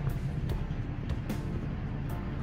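Background music with a steady low tone, over faint regular knocks of footsteps on pavement, about two a second.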